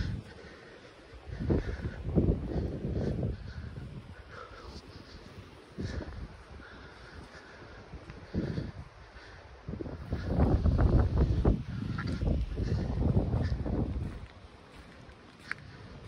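Wind buffeting the microphone in uneven gusts, the strongest and longest about two-thirds of the way through.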